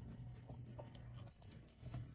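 Faint scraping and rubbing of a plastic pry key forced against the plastic fuel filler housing to push its locking clip down.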